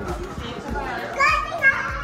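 Young children talking and playing, with a child's high-pitched voice rising loudest past the middle.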